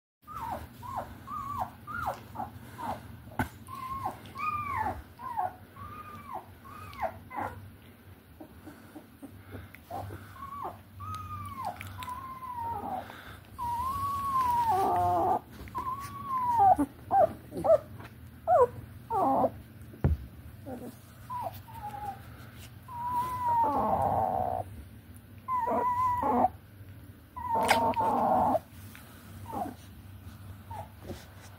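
Young puppies whimpering and squealing: many short, high cries that rise and fall, repeated one after another. Several louder, longer cries come in the second half.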